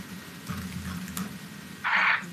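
A pause in speech: faint room tone over a video link, with a short hiss near the end.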